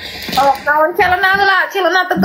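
Speech only: a woman talking in a high voice.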